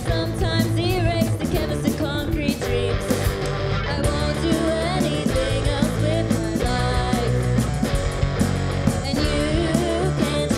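Live rock band playing: electric guitar, bass guitar and a drum kit, with steady drum hits under sustained bass and guitar.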